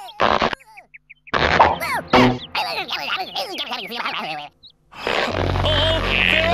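Cartoon soundtrack of wordless character vocalisations and comic sound effects: a short burst, then about three seconds of squeaky, straining vocal sounds. Background music with a steady bass comes in about five seconds in.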